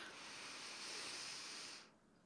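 A woman's slow, deep breath in, heard as a faint airy hiss that stops sharply near the end.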